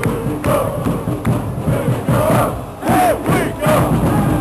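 Ice hockey fans in the stands chanting and shouting together, many voices rising and falling in a loud collective cheer.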